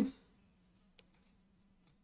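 A single short, faint click about a second in, over a faint steady hum.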